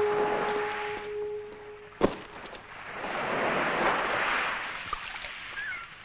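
Sea washing on a pebble beach, with a single sharp knock about two seconds in and a few short high gull cries near the end. A held brass note of the film's score dies away over the first two seconds.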